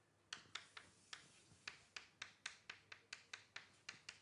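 Chalk writing on a blackboard: a quick, irregular series of quiet, sharp taps, about three or four a second, as the chalk strikes and lifts from the board.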